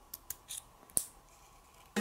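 Small plastic clicks of Lego minifigure parts being snapped together as a sword and effect piece are fitted into the figure's hand: a few faint clicks, the loudest about a second in.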